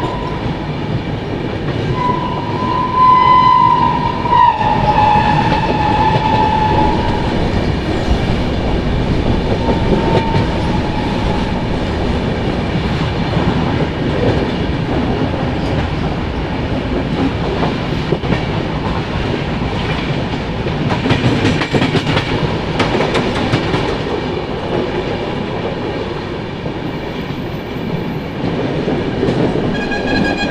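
Passenger train coaches rolling slowly through a station over jointed track and points, wheels clattering, heard from an open coach door. A train horn sounds briefly near the start, then again for several seconds from about two seconds in, dropping in pitch partway, and once more near the end.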